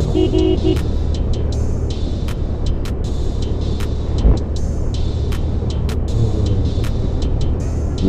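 Suzuki Access 125 scooter's single-cylinder four-stroke engine running steadily under load on a climb, with wind rumble on the mounted microphone. A short beep comes near the start, and a low thump about four seconds in.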